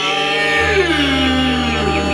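Didgeridoo playing a steady drone, its overtones sliding downward in pitch, with a deeper low tone joining about half a second in.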